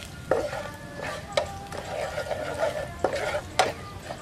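Plastic spatula scraping and knocking around a nonstick frying pan as chopped garlic sizzles in oil, with sharp knocks a few times through the stirring.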